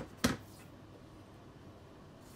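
Two short clicks about a quarter second apart, the second louder, from hands handling hardware in a computer case. Then only faint room tone.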